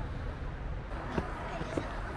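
Footsteps on stone steps, a few faint knocks from about a second in, over a steady low rumble, with brief faint voices in the background.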